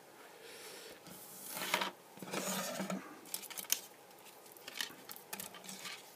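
Handling noise from the plastic parts of an LED panel light and a loose strip of LED tape being moved about by hand. It comes as a few bursts of rustling and scraping in the first three seconds, then scattered light clicks.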